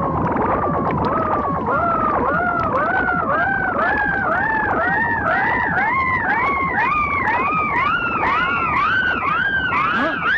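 Comic synthesizer sound effect: a string of short pitched swoops, under two a second, each sliding up and dropping back, with the whole series climbing steadily higher in pitch.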